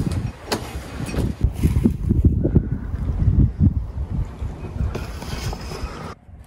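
Wind buffeting the microphone: a loud, gusting low rumble, with a few light clicks from plastic seed trays being handled.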